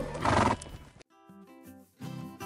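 A horse neighing, one short loud call lasting about half a second at the start, laid over the edit as a sound effect. Quiet plucked-string background music follows after about a second.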